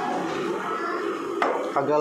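Chopsticks clicking once, sharply, against a noodle bowl about one and a half seconds in, over steady room noise.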